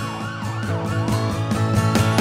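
A siren sweeping up and down in pitch over music that is playing.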